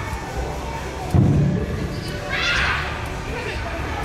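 A sudden thump about a second in, then a short high-pitched cry from a person, over background voices.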